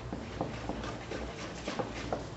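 Wire whisk stirring thick batter in a stainless steel bowl, with light, irregular clicks of the whisk against the metal over a steady low background hiss.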